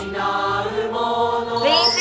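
A held musical chord of steady tones, then, about one and a half seconds in, a mark tree (bar chimes) swept by hand into a bright, rising metallic shimmer.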